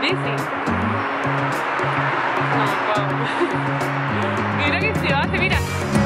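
Background music with a steady, repeating bass line; a voice speaks briefly near the end.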